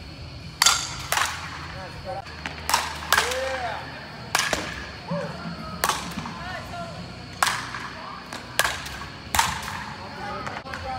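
Softball bats striking balls in indoor batting cages: about a dozen sharp cracks at uneven intervals, some close together, from several hitters at once.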